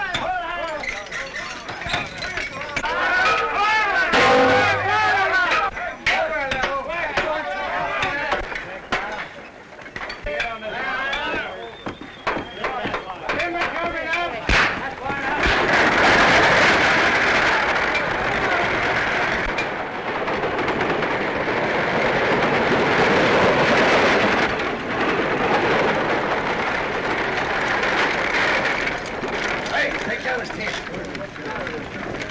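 Mixed film soundtrack: voices calling over music at first, then, from about halfway, a horse-drawn buggy going at speed, its hooves and wheels making a dense, steady clatter.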